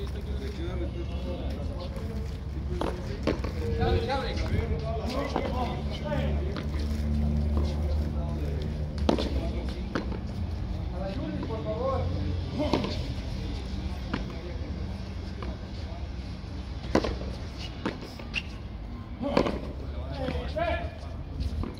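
Frontón a mano ball struck by bare hands and smacking off the concrete front wall: sharp cracks a few seconds apart during a rally.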